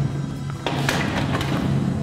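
Metal mesh holding-cell door swung shut, clanking and latching in a couple of sharp metallic knocks about two-thirds of a second to a second in, over steady background music.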